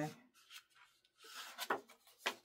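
Patterned scrapbook paper rustling and sliding as one folded sheet is tucked inside another, with a few soft crinkles in the second half.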